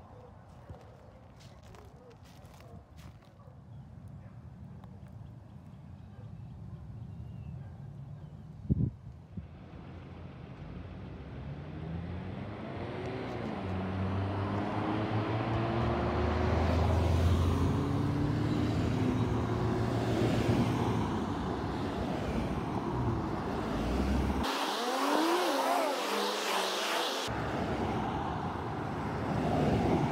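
Road traffic: cars driving past, their engine notes rising in pitch as they accelerate. The traffic noise builds from faint to steady over the first half, after a single thump about nine seconds in.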